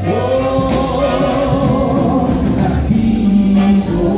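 Live music: singers performing a song with band accompaniment, several voices singing together.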